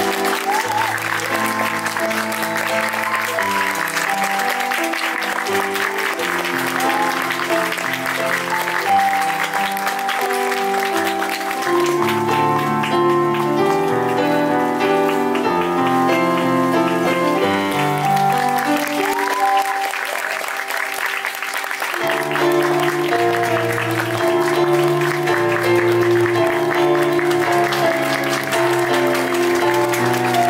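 Theatre audience applauding steadily over instrumental music from a musical.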